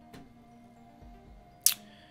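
One sharp, loud click about one and a half seconds in, over faint background music.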